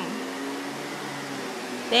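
Canister vacuum cleaner running steadily while its floor head is pushed over a rug.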